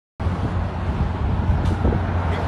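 Steady low rumble of street traffic.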